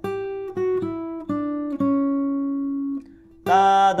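Acoustic guitar solo line picked one note at a time: five notes in the first two seconds, the last left ringing for over a second. After a brief pause near the end, a voice starts singing the line as "da-da-dan".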